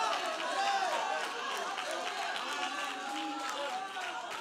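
Church congregation calling out praise, many voices overlapping at once with no single voice standing out.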